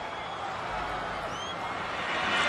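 Large stadium crowd cheering and screaming steadily, with a shrill rising cry about a second and a half in.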